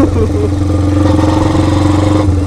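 Kawasaki Binter Merzy (KZ200) custom chopper's single-cylinder four-stroke engine running at a steady, even pace while the bike is ridden; the rider calls the engine healthy.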